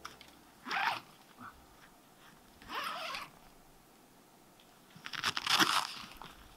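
Rooftop tent's fabric window zipper being unzipped from inside in three pulls; the last is the longest and loudest.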